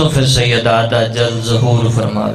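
A man's voice chanting a drawn-out, melodic line into a microphone, amplified over a sound system.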